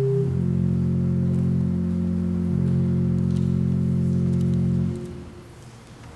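Pipe organ holding a sustained closing chord of steady notes. The chord shifts once just after the start, is released about five seconds in, and dies away in the church's reverberation.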